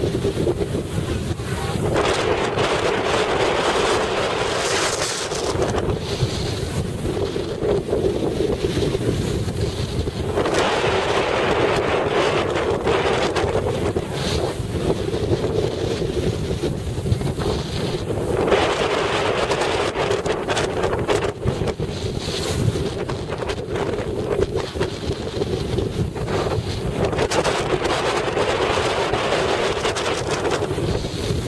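Wind blowing across the microphone, a continuous rushing that swells in gusts several times and eases between them.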